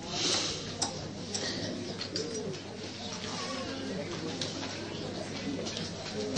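A bird cooing over a low murmur of voices, with a short burst of noise at the start and a few sharp clicks.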